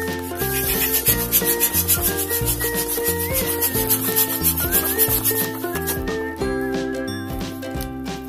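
Electric balloon pump blowing air into a latex balloon: a fast-fluttering hiss that starts just after the beginning and cuts off about two seconds before the end. Light background music plays under it.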